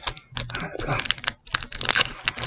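Foil booster pack wrapper crinkling as it is handled and opened, an irregular run of sharp crackles.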